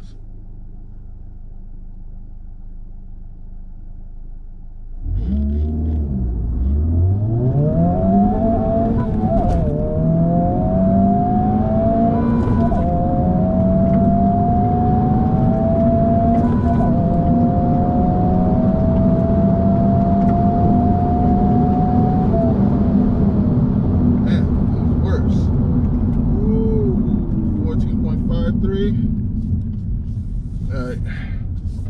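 Honda Civic Type R (FL5) 2.0-litre turbocharged four-cylinder heard from inside the cabin. It idles, then launches at full throttle about five seconds in, the revs climbing steeply in each gear, with several upshifts heard as sudden drops in pitch. For the last several seconds it runs at a steady note, then eases off near the end.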